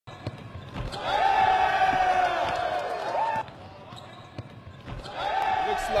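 Basketball game sound: a few sharp bounces of the ball on the hardwood court under a long drawn-out voice-like shout that starts about a second in and holds for a couple of seconds, then starts again near the end.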